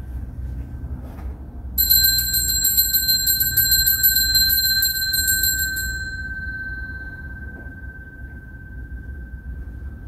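Altar bell shaken rapidly for about four seconds, starting about two seconds in, then ringing out; this is the ring that marks the elevation of the chalice at the consecration. A faint steady high whine runs underneath.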